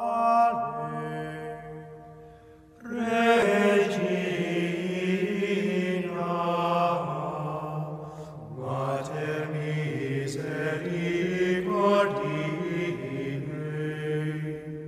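Sung chant played as opening music: long, held vocal notes, with a brief drop about two to three seconds in before the singing resumes.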